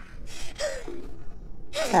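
A gagged man gasping for breath in pain, several short ragged breaths with a brief strained groan about halfway through.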